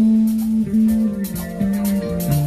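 Live disco band playing: an electric guitar sounds held notes over drums with regular cymbal strikes.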